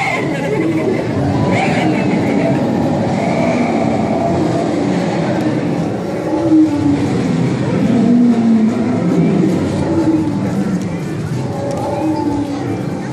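Indistinct voices of people talking in a large hall over a steady background rumble.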